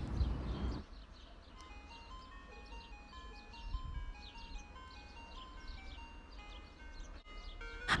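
Ice cream van jingle: a faint, tinkly melody of short chiming notes, starting about a second in.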